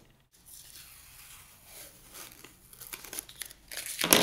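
Protective paper masking being peeled off a clear laser-cut acrylic piece: a faint crinkling and tearing with small crackles, louder near the end.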